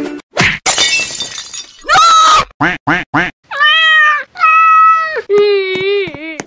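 Crying-cat meme sound effect: a short noisy crash about half a second in, then a run of short cries and two long meowing wails, and near the end a long wavering wail.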